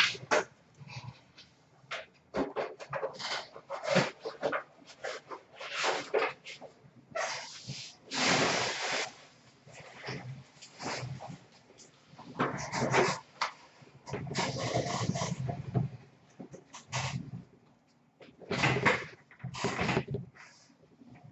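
Hockey trading cards being handled and flipped through by hand: irregular bursts of rustling, some about a second long, with short pauses between.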